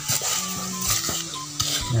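A steel machete blade scraping and digging into hard, packed sandy soil in slow, gritty strokes.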